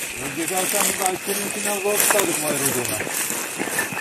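Several men talking indistinctly at a distance as they walk along, over a steady hiss and a constant thin high-pitched tone.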